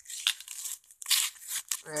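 Paper mail packaging being torn and crinkled open in a few short bursts.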